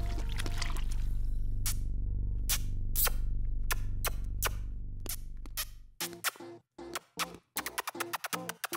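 A low, sustained music bed with soft wet kiss-like pops laid over it, about one every half to three quarters of a second. About three quarters of the way through, the music drops away and quicker, shorter pops continue.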